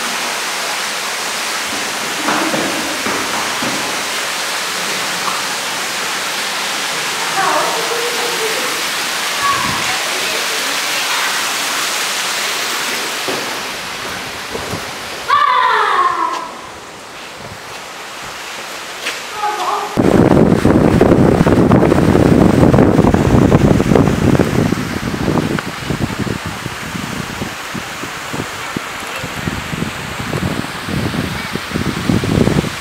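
Steady rushing hiss of falling water from a stone garden cascade, with faint voices over it. About halfway through there is a brief loud burst. Near two-thirds of the way in, a louder, crackly low rumbling noise takes over.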